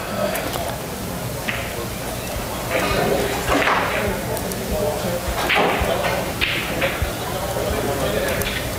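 Indistinct murmured voices over a steady hum of room noise in a pool hall.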